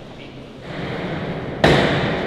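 A single loud, sharp knock about a second and a half in, ringing out in the church's echo over a rise in crowd noise.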